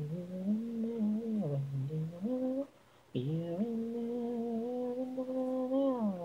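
One person's voice performing an instrumental melody a cappella without words. A short phrase of rising and falling notes, a brief break about halfway, then a long held note.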